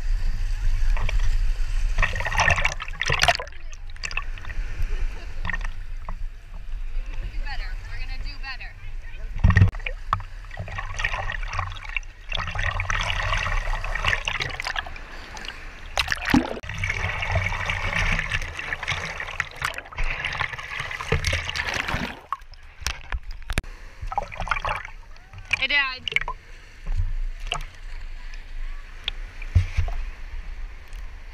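Ocean waves and water sloshing and splashing around a GoPro held at the surface in the surf, with the camera dipping into and out of the water. The noise surges and fades unevenly, broken by a few sharp knocks.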